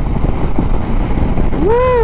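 Motorcycle ride at steady speed: the engine running under a loud, constant rush of wind and road noise on the handlebar-mounted microphone.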